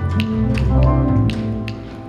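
Live instrumental jazz-style trio: upright double bass and electric bass guitar playing low notes with a grand piano, crossed by sharp taps about twice a second.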